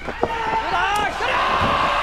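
A wrestler slammed onto the ring mat gives one sharp impact about a quarter of a second in. From about a second in comes a loud, held roar of shouting and crowd noise.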